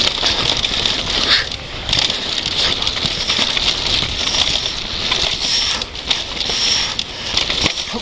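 Downhill mountain bike running fast over a dirt and loose-rock trail: a steady hiss of tyres on the ground with frequent sharp rattles and knocks as the bike hits stones and bumps.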